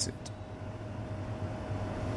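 Steady low background rumble with a faint constant thin hum above it.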